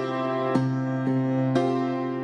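Keyboard playing a slow instrumental passage: sustained chords struck about once a second over a held low bass note.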